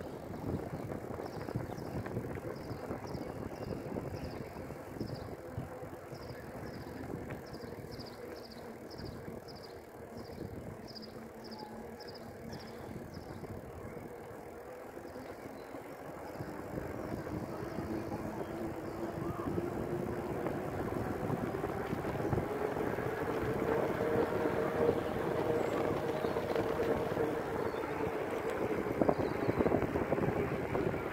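Bicycle riding along a tarmac cycle path: steady tyre and wind noise with small bumps and knocks from the ride. Faint high-pitched short sounds repeat about two or three times a second for the first dozen seconds, and from about halfway the noise grows louder as a hum rises in pitch.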